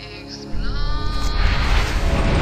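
Cinematic trailer score and sound design: a deep rumble swells in about half a second in under a high pitched tone that slides and wavers, building in loudness.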